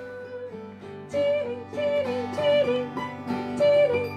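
Acoustic folk song: a woman singing a short phrase over and over, with acoustic guitar and cello underneath. The voice comes in about a second in, after a quieter start.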